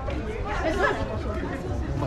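Passersby chatting as they walk close past on a busy pedestrian street, with a steady low rumble of street background underneath.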